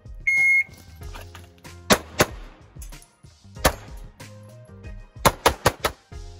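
A shot timer's start beep, a short steady electronic tone, then pistol shots: a quick pair, a single shot, and near the end a fast string of four or five. Background music runs underneath.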